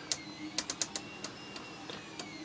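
Detented rotary time-base knob of an analogue oscilloscope clicking as it is turned: a quick run of about seven sharp clicks in the first second or so, over a faint wavering high whine and low hum.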